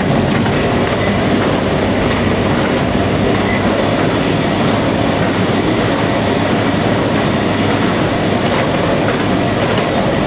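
Steady clattering run of factory machinery at constant loudness, with no pauses.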